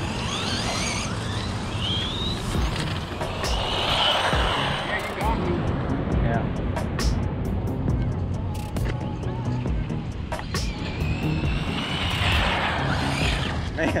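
Background music mixed with the whine of small electric RC buggies driving on gravel and asphalt, the pitch rising near the start and falling near the end as they speed up and slow down.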